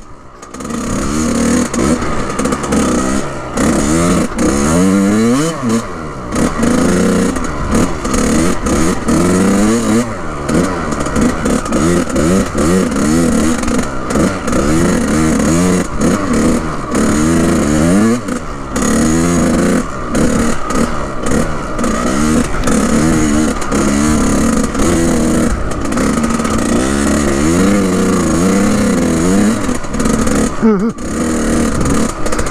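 Kawasaki KX100's two-stroke single-cylinder engine revving up and down over and over as the throttle is worked while riding, after a brief dip just at the start.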